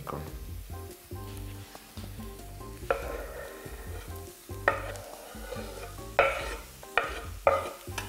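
Chopped mushrooms scraped off a wooden board with a knife into a hot frying pan of onions, sizzling in a few sudden bursts over the second half, each dying away. A quiet music bed runs underneath.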